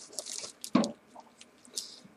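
Plastic ziplock piping bag crinkling as it is picked up and handled: a few short crackles, the loudest a little under a second in.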